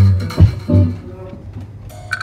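A few short low notes on an instrument, three of them in the first second, then quieter room sound.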